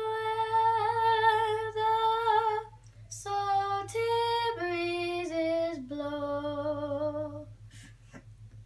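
A young girl singing solo without accompaniment: one long held note lasting nearly three seconds, then a phrase of shorter notes stepping down in pitch.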